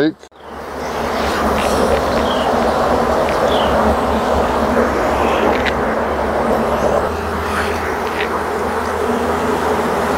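Honeybees buzzing in a loud, dense, steady hum from an opened nuc hive as a frame is pried up and lifted out, the hum swelling up in the first second. A few faint clicks come through it.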